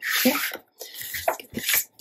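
Sheets of patterned paper being slid and shuffled by hand across a cutting mat, giving a hissing swish, then several shorter scratchy rustles.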